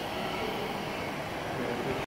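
Steady ambient noise and hum inside an aquarium's walk-through tunnel, with no distinct events.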